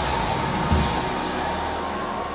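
Soft background church music, held notes over a low steady drone, under the steady wash of a large congregation praying.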